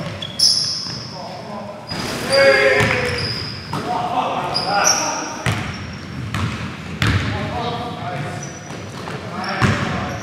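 Live basketball game sound in a gymnasium: a basketball bouncing on the hardwood court with several sharp impacts, short high sneaker squeaks, and players' voices calling out, all echoing in the hall.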